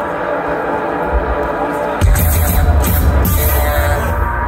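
Electronic rock band playing live through a loud concert PA, heard from the crowd. The music starts thinner, then heavy bass and a beat come in sharply about halfway through.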